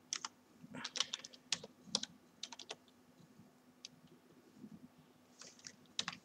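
Typing on a computer keyboard: quick runs of key clicks over the first three seconds, then a few scattered taps.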